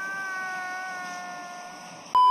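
A single long, drawn-out high note whose pitch sags slightly as it slowly fades.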